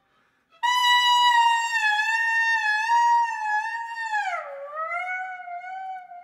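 Instrumental music: after a brief silence, a saxophone holds one long loud note that wavers slightly, then bends down in pitch and back up to settle on a lower held note.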